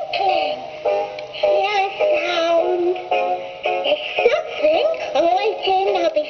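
Fimbles Baby Pom singing plush toy playing its song: a high, childlike character voice singing a bouncy tune in short phrases of held and sliding notes.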